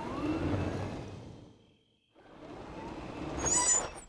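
Cartoon sound effect of a small utility cart driving off: a motor whine rising in pitch over rolling rumble, fading out about a second and a half in. After a short silence the whirring comes again, rising, with a brief high chirp near the end.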